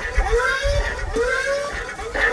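Mechanical sound effects from a speaker built into a walking Hulkbuster costume: a rising servo-like whine that repeats about every half second, over low thuds of the stilted steps.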